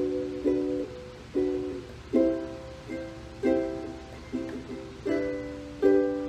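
Ukulele strummed by hand, about eight to nine chord strokes in a steady pattern, each chord ringing and fading before the next.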